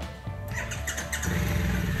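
Background music, with motorcycle engines coming in about half a second in and getting louder. The engines are Harley-Davidson Pan America adventure bikes with Revolution Max 1250 V-twin engines, running before setting off.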